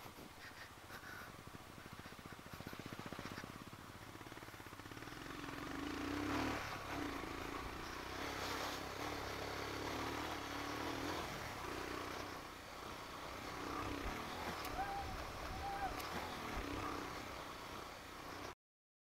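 Royal Enfield Himalayan motorcycle's single-cylinder engine running at low speed over a dirt track, heard faintly, growing louder about four to five seconds in.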